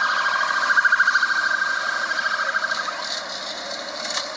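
Rapidly pulsing electronic alarm tone, cutting off about three seconds in.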